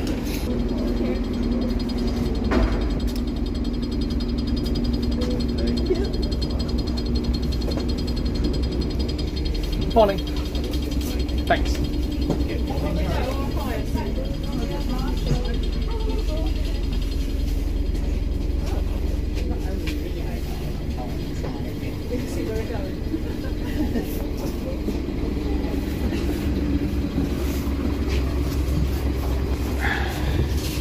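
Diesel engine of a Scania double-decker bus idling steadily, heard first at the open door and then from inside the bus, with people talking over it and a sharp knock about ten seconds in.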